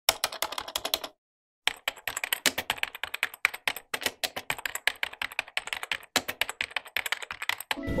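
Computer keyboard typing: a quick run of key clicks that stops dead for about half a second a second in, then goes on. Music comes in just before the end.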